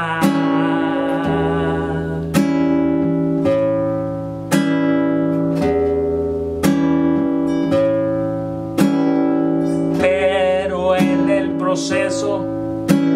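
Nylon-string classical guitar played in a steady accompaniment rhythm, a strong strum about once a second with the chord ringing between strokes.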